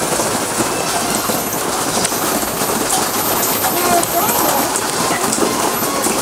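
Steady rain, an even hiss, with faint voices underneath.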